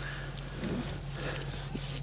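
A steady low hum with a faint, even hiss and a few soft handling ticks.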